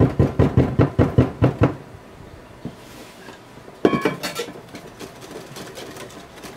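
Quick, rhythmic knocking of a mixing utensil against a glass bowl as meringue is beaten into a thick cream-cheese batter, about seven strokes a second for a second and a half. A second, shorter run of strokes comes about four seconds in.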